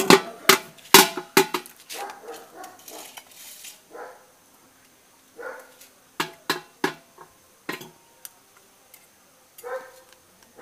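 Wooden sticks beating on the bottom of an upturned aluminium bucket as a makeshift drum, in irregular sharp strikes. There is a quick flurry of hits in the first second or so, then scattered single hits a few seconds later.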